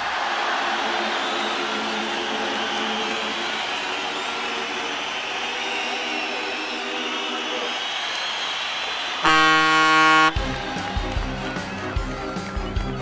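Cartoon soundtrack: a steady crowd roar with soft music under it for about nine seconds, then a loud, flat, one-second horn blast, followed by bouncy music.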